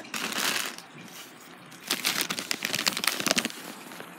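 Handling of cardstock and a plastic spoon on a tabletop: a short rustle, then from about halfway through a quick run of small clicks and crackles.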